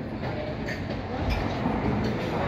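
Restaurant background din: a steady low rumble of room noise with a couple of faint clinks.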